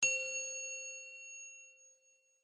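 A single bell-like chime struck once, ringing with a few clear tones and fading away over about two seconds: a channel logo sting.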